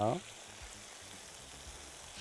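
Yogurt-marinated chicken skewers sizzling steadily on a very hot grill pan, an even hiss as the marinade's juices fry.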